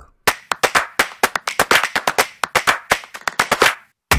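A quick, fairly even run of sharp hand claps, about seven a second, stopping shortly before the end.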